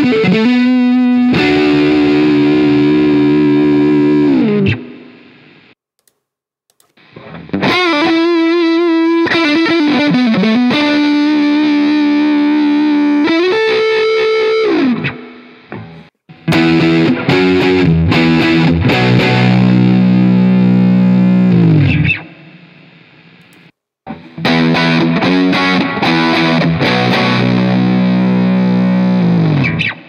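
Electric guitar (Fender Stratocaster) through IK Multimedia AmpliTube's modelled Fender Super Reverb amp with an OCD overdrive pedal switched on, giving a distorted tone. It plays four phrases separated by short pauses: single-note lines with vibrato first, then held chords, each left to ring out.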